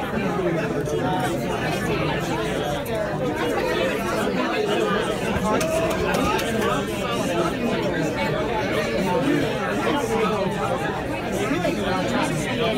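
Indistinct background chatter of several people talking at once, with no clear words.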